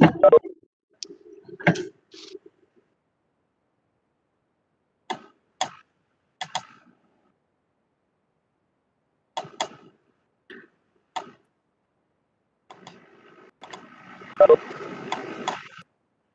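Video-call audio breaking up: short clicks and snatches of sound, several in quick pairs, separated by dead silence, then a few seconds of faint muffled noise near the end. A connection or microphone dropping in and out.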